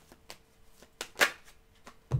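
Tarot cards being handled on a table: a few soft clicks and brushes of card, the loudest a little over a second in.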